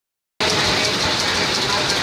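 Rapier loom with an electronic Jacquard head weaving a saree: steady, rhythmic mechanical clatter that starts a moment in.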